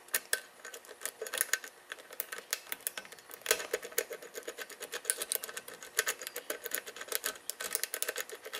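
A thin steel Bogota rake rocked up and down in the paracentric keyway of a multi-shearline pin-tumbler lock under light tension, its pins clicking rapidly and continuously. This is a random raking attack that has not yet set the pins at either shear line.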